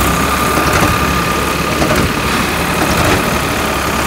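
Diesel tractor engines running steadily at low speed, with a thin steady whine over the drone.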